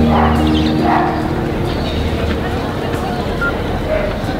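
Outdoor crowd ambience: a steady wash of background noise with indistinct distant voices and a few short calls. Soft background music tails off in the first second.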